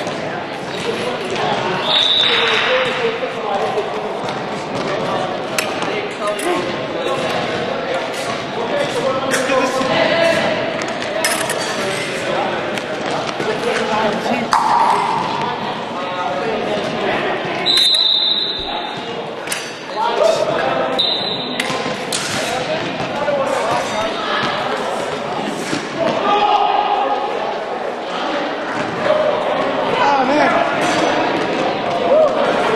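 Foil fencing bout on a hall floor: feet stamping and shuffling with quick advances and lunges, and thin metal blades clinking. Three times a short, steady high beep sounds, typical of an electric scoring box registering a touch. Voices talk in the background.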